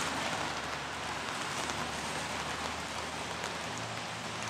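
Steady rain falling on wet pavement and the truck, an even hiss with a faint low hum underneath.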